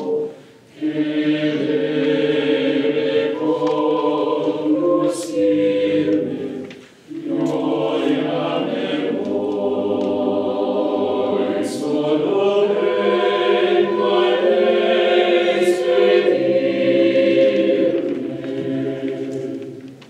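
Mixed choir of men's and women's voices singing a cappella in close harmony, in long held phrases. Short breaths between phrases come about half a second in and near seven seconds, and the phrase ends just at the close.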